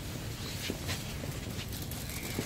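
Footsteps on pavement, a few light, irregularly spaced steps over a steady low outdoor rumble.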